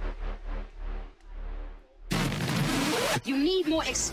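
Hard bounce dance track in a DJ mix being filtered down and fading away over the first two seconds, then about a second of loud hiss that cuts off suddenly, and a spoken voice sample coming in near the end.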